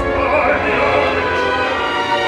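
Live symphony orchestra playing, with operatic voices singing with a wide vibrato over it from just after the start.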